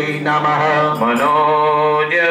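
Male voices chanting a Sanskrit mantra in long, held notes over a steady low drone, the pitch shifting once about halfway through.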